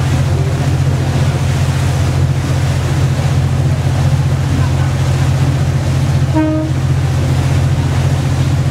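A boat's engine running with a steady low hum under a rush of wind and water noise. A brief pitched tone sounds once, about six and a half seconds in.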